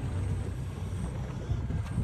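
Steady low rumble of wind buffeting the microphone on an open boat deck at sea.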